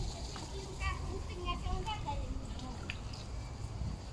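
Water from a burst water main running steadily along a flooded curb and gutter. Voices are heard in the background during the first half.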